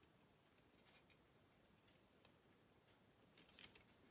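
Near silence, with a few faint ticks and taps of hands handling the plastic frame and circuit board of a pocket computer.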